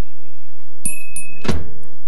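Background music, with two quick clicks and then a single loud thunk about one and a half seconds in.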